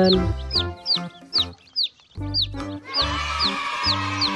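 Background music with held instrumental notes, over baby chicks peeping: a steady string of short, high, downward-sliding peeps, two or three a second, dropping out briefly midway.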